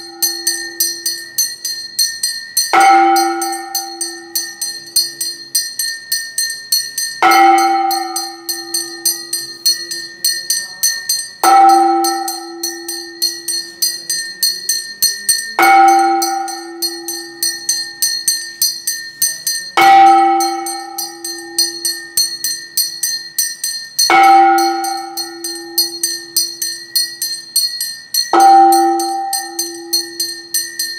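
Temple bells rung for aarti: a deep bell struck about every four seconds, each stroke ringing on for a couple of seconds. Under it, a small hand bell rings without a break at about four strokes a second.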